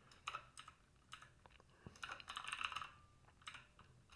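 Faint typing on a computer keyboard: a few scattered keystrokes, then a quick run of them about two seconds in.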